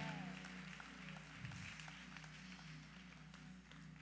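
Faint soft keyboard music holding low sustained chords, with a light haze of congregation noise that thins out after the first second or so.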